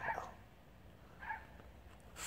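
Mostly quiet background with one short, faint vocal sound about a second and a half in.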